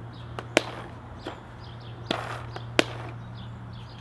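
Plastic lid of a Bunker Kings CTRL paintball hopper being pried open and snapped shut, giving sharp clicks: a close pair about half a second in, then two more around the middle.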